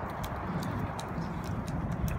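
Footsteps on a concrete bridge walkway: a handful of light, irregular clicks over a low, uneven rumble.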